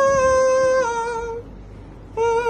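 A single voice humming a high held note that steps up, holds, then drops in pitch and fades out about a second and a half in.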